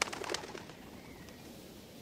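A bird's wings flapping as it takes off, a quick flurry of wingbeats lasting about half a second, followed by a faint high bird call.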